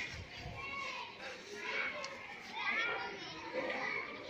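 Children's voices talking and calling, with no clear words.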